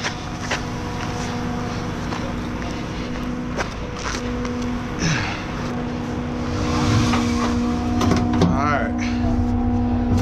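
A steady machine hum, breaking off briefly about four seconds in, with a few sharp knocks from the rubber unloading hose and its metal fittings being handled.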